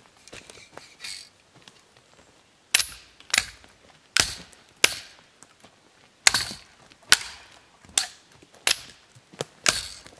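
A bow saw's metal frame struck against dead, dry conifer branches, knocking them off: about ten sharp cracks of snapping wood, starting about three seconds in and coming roughly one every two-thirds of a second.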